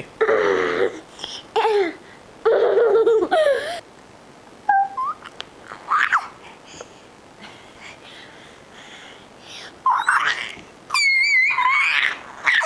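A two-year-old girl laughing at first, then babbling with short squeaks and rising pitch glides; near the end a high-pitched squeal held for about a second, which sounds like a dolphin.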